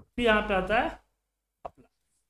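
A short spoken word, then a few quick computer keyboard key taps a little past the middle.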